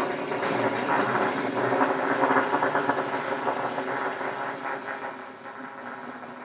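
Dense cluster of many overlapping, sustained trumpet notes layered together, forming a rough, massed brass texture that grows gradually quieter through the second half.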